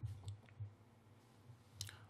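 A few soft computer-mouse clicks, the loudest right at the start, over a quiet low room hum.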